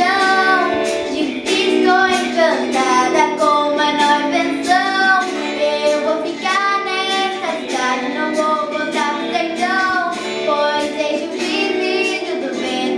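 A young girl singing a slow melody with long, wavering held notes over an instrumental backing track.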